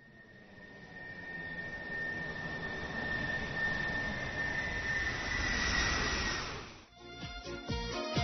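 A rushing, jet-like noise with a steady high whine, swelling over about six seconds and cutting off abruptly about seven seconds in. Rhythmic music with sharp beats starts right after.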